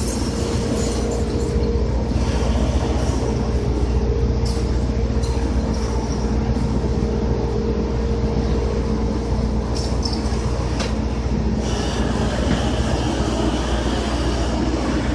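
Heavy machinery running with a steady low rumble and a steady hum. Several brief high-pitched squeals or hisses come over it, about four seconds in and again around ten to twelve seconds.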